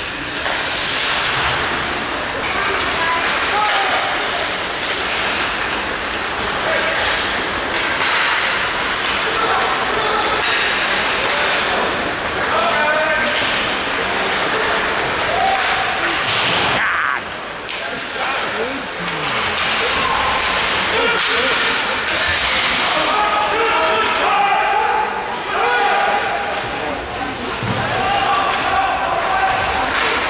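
Ice rink game sound: indistinct spectators' and players' voices and calls, with occasional knocks of sticks and puck against the boards, one louder bang about 16 seconds in.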